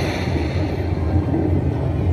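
Slot machine's lightning sound effect: a sustained noisy rumble and crackle over the steady low hum of the machine, played as lightning strikes across the reels to trigger the Hold & Spin feature.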